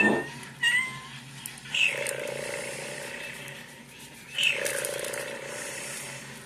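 A cat meowing: a short chirp, then two drawn-out meows, about two seconds in and again at about four and a half seconds.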